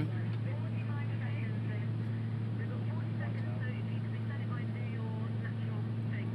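Steady low drone of an aircraft's engines heard from inside the cabin, with faint voices murmuring in the background.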